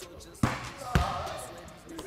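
A missed basketball shot: the ball clangs off the goal about half a second in, then bounces once on a hardwood floor a half-second later, louder, with both hits echoing in a large room.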